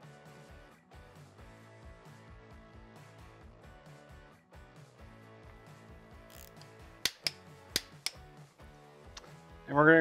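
Background guitar music, with four sharp metallic clicks in quick succession a little past halfway: a torque wrench on the cam cover bolts being tightened to 100 inch-pounds.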